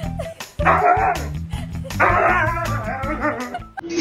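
Siberian husky vocalising in two long, wavering, howl-like calls over background music.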